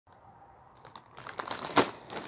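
Plastic mailing satchel crinkling and rustling as it is handled, starting faint and building after about a second, with a sharp crackle near the end.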